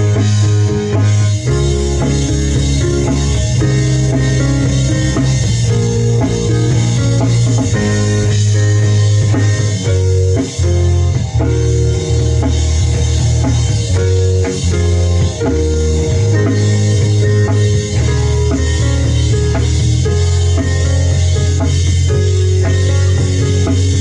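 A rock band playing a song live together: drum kit, electric bass, electric guitar and a Studiologic Numa Compact stage piano, with a strong, steady bass line and cymbals throughout.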